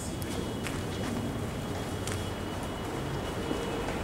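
Footsteps of people walking, with a few light clicks and scuffs over a low rumble of handling noise.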